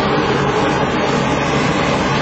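Loud, steady rumbling noise of fabric rubbing against a handheld camera's microphone.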